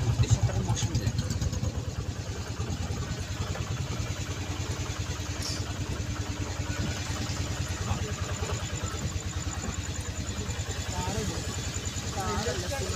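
Engine of the small vehicle carrying the recorder, running steadily with a fast, even low throb as it drives along.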